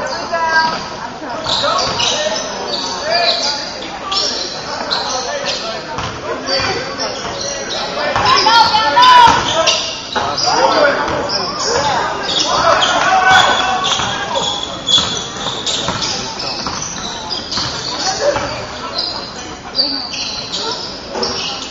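Live basketball play in a gym: sneakers squeaking in short bursts on the hardwood floor, the ball bouncing, and players calling out indistinctly, all echoing in the large hall.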